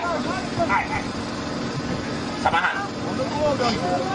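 People talking, with a steady low hum underneath that fades about three seconds in.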